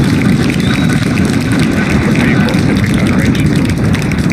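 Falcon Heavy's 27 Merlin rocket engines firing just after liftoff: a loud, steady deep rumble with a dense crackle.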